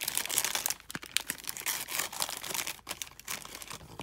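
Plastic candy wrappers crinkling as the packages are handled, with irregular crackles that are densest in the first second.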